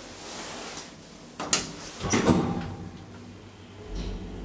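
Manual swing landing door of a KONE hydraulic elevator being handled, with two sharp clacks from the door and its latch about one and a half and two seconds in. A steady low hum sets in at the very end.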